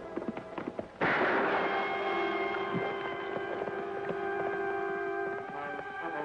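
A single gunshot about a second in, a sharp crack with a short echoing tail, over dramatic orchestral music holding a sustained chord. A few sharp clicks come just before it.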